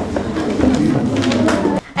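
Low murmur of several voices talking over one another, cutting off abruptly near the end.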